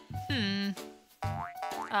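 Bouncy children's background music with a steady beat. About a third of a second in comes a cartoon-style sound that slides down in pitch.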